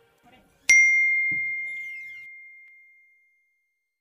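A single bright bell ding, struck about a second in, ringing one high tone that fades away over about two and a half seconds: a notification-bell sound effect for an animated subscribe button.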